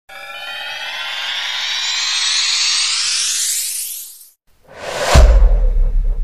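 Countdown intro sound effects: an electronic riser sweeping steadily upward in pitch for about four seconds and cutting off, then a short whoosh that swells into a deep boom hit about five seconds in, its low rumble ringing on.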